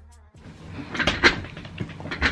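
A few short knocks and clacks of objects being handled, loudest about a second in, after a brief low tail of music cuts off at the start.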